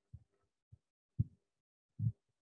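Four soft, low thumps at irregular intervals: faint handling noise picked up by the microphone as slides are swiped through in quick succession.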